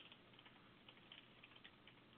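Faint computer keyboard typing: a run of irregular, light key clicks.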